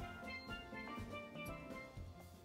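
Quiet background music from a steel drum band, struck steelpan notes ringing on one after another.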